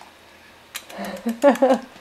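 A few soft clicks, then a short murmured vocalisation by a person's voice lasting under a second, starting about a second in.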